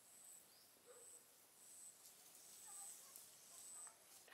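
Near silence: faint outdoor ambience with a short, high-pitched chirp repeating about once a second, five times.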